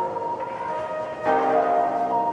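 Background music of held, sustained chords, changing to a new chord just over a second in.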